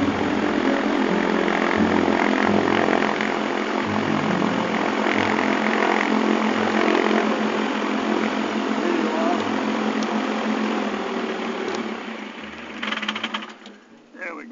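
Searey amphibian's pusher engine and propeller running at taxi power, heard steady and loud inside the cockpit. Near the end the engine dies away, with a brief rattle as it comes to a stop.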